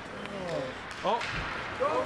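Excited spectators calling out "Oh" and "Go, go" in an ice rink, with a single low thump about a second and a half in.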